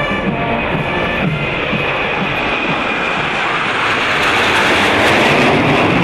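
Band music fades as the roar of a formation of jet aircraft flying low overhead builds, loudest near the end: the Frecce Tricolori's Aermacchi MB-339 jets passing over.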